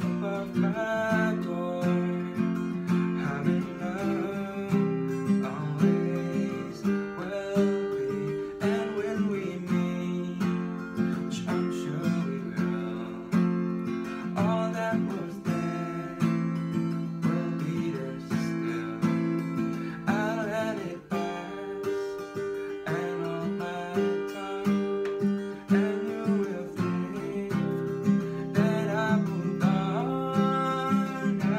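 Elypse Electra Deluxe acoustic guitar, played unplugged with a capo at the fifth fret, strumming chords in a steady rhythm.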